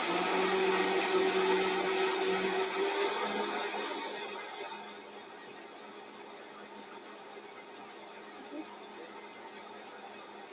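Vitamix blender motor running steadily on its slowest speed, mixing a coconut-milk drink with a pinch of xanthan gum. The hum is louder for the first few seconds, then settles to a quieter steady run.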